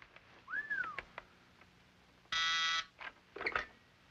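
A desk telephone gives one short, buzzing ring a little after two seconds in. Before it, about half a second in, comes a brief whistle that rises and then falls.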